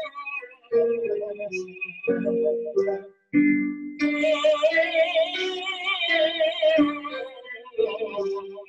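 Tenor singing an ah vowel through his upper passaggio: a few shorter notes, then a long held top note with vibrato. He keeps the ah mouth shape while the vowel quality turns over on the high notes, which is passive vowel modification.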